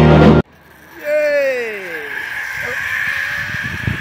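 Live rock music cuts off abruptly half a second in. After a brief hush, a person gives one long call falling in pitch, followed by a steady whirring hiss of a zip-line trolley running along its cable, with wind rumble.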